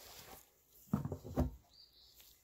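Two short knocks about half a second apart, with a faint rustle just before them: handling noise from tools or parts being moved.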